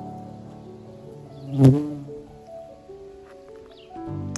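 Background music with long held notes. About one and a half seconds in, a bumblebee buzzes briefly and loudly right by the microphone.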